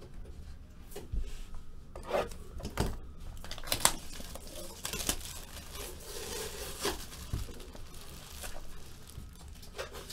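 Plastic shrink wrap being torn and crinkled off a cardboard trading-card box, with irregular crackles and scrapes of the box being handled. The loudest tear comes near the middle.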